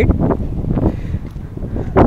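Wind buffeting the phone's microphone, an uneven low rumble.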